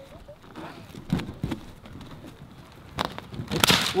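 Children shifting about on a small trampoline among rubber balloons: scattered light knocks and rustling, with a short louder noisy burst near the end.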